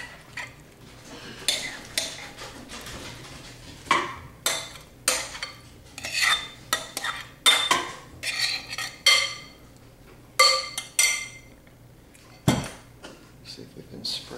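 A metal spoon scraping and clinking against a glass mixing bowl as a soft cheese filling is scooped out, in irregular clinks with a bright ring. A single duller knock comes near the end.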